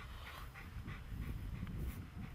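German Shepherd dog panting in quick, faint, even breaths, about four or five a second.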